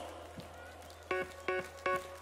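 Live band music starting about a second in, after a brief quieter stretch: short, sharp pitched notes repeated about every 0.4 seconds.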